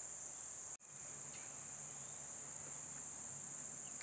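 Steady high-pitched drone of insects, cricket-like, with a momentary dropout a little under a second in.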